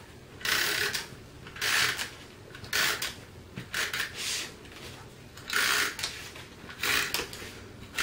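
Handheld permanent tape runner drawn along cardstock in a series of short strokes, about one a second, laying down adhesive.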